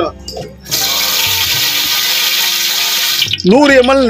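Liquid poured into a hot, dry metal biryani pot, hissing loudly as it flashes to steam. The hiss starts abruptly under a second in and cuts off about two and a half seconds later.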